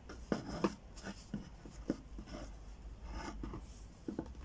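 Handling noise: a string of light, irregular knocks and rubbing as hands grip and turn a plastic mannequin head wearing a rubber headlamp on a wooden table.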